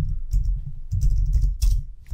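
Typing on a computer keyboard: a run of irregular keystrokes.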